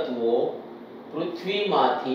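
A man's voice speaking, a teacher explaining, with a short pause in the middle.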